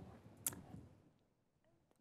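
A single short, sharp click about half a second in, in a pause between words; the rest is near silence.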